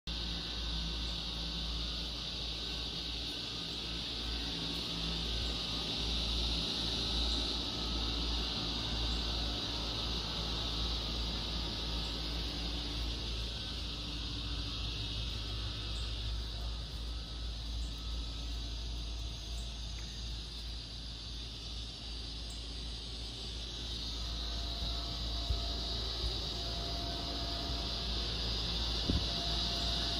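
Steady high-pitched buzz of a cicada chorus, swelling slightly near the start and again near the end, over a low rumble.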